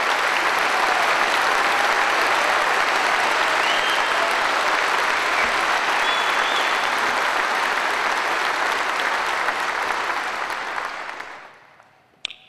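A large audience applauding, a long, steady wave of clapping that fades away near the end.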